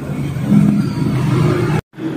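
Steady noisy rumble with no speech, broken near the end by a sudden brief dropout to total silence, as at an edit between recorded clips.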